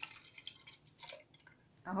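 Milk being poured from a glass cup into a plastic blender jar, a faint splashing trickle that fades out.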